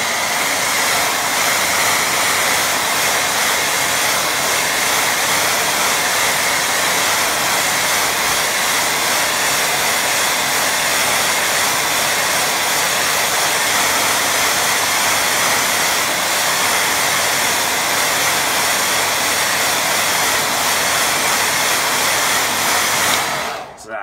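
BaByliss handheld hair dryer running steadily at one setting, switched off just before the end.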